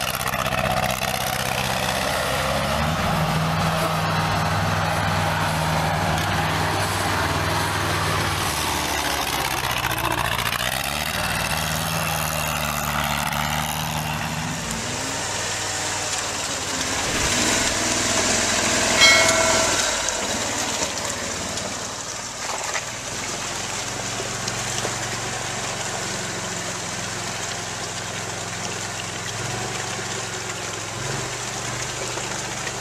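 Small-engined tracked amphibious ATV running and changing speed, then, after a cut about halfway through, an amphibious 8x8 ATV's engine running as it churns through mud and water. A brief high tone sounds a little after the cut and is the loudest moment.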